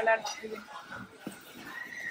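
A short, high-pitched vocal sound, like a laugh or squeal, at the very start, then only faint background noise.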